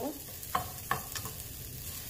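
Rice toasting in hot olive oil in a skillet, sizzling steadily while a slotted spatula stirs it, with a few sharp clicks of the spatula against the pan.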